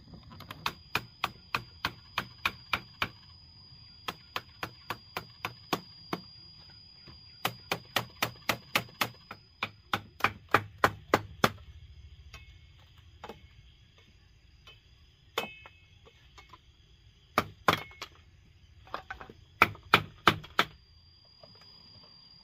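Hammer tapping bamboo dowels through holes in PVC water pipes, in quick even runs of about three blows a second with pauses between them. The last runs of blows are the loudest.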